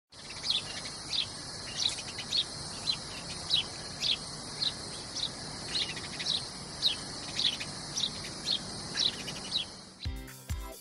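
A bird chirping over and over, a short call a little under twice a second, over a steady high-pitched hiss like an insect chorus.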